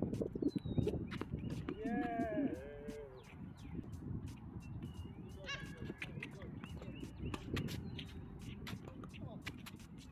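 A doubles rally on a hard tennis court: repeated sharp clicks of tennis balls struck by rackets and bouncing on the court, along with players' footsteps. About two seconds in, a voice calls out with a pitch that rises and falls, and a short high chirp comes a few seconds later.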